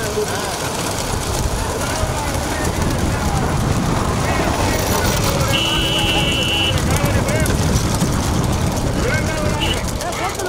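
Racing bullock carts passing close, with a dense steady rumble and people shouting over it. A steady tone sounds for about a second midway.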